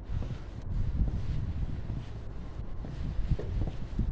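Wind buffeting a phone's microphone outdoors: an uneven low rumble.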